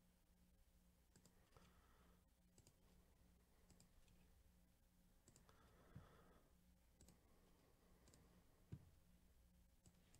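Near silence with faint, scattered computer mouse clicks about once a second, and two faint low thumps, one about six seconds in and one near the end, over a faint steady hum.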